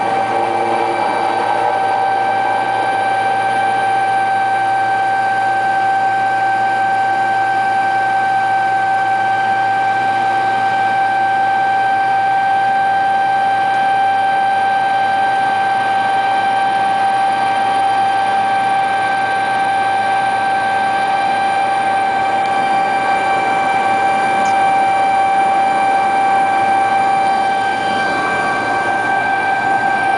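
Helicopter cabin noise in flight: a loud, constant rush of engine and rotor with a steady high whine made of several tones, heard from inside the cabin.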